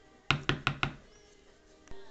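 A quick run of four sharp knocks, about five a second, each a little weaker than the one before and each with a short low ring; a single faint click comes near the end.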